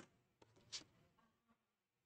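Near silence with faint handling sounds from a plastic French curve being repositioned on drawing paper: a light click at the start and a brief scrape a little under a second in.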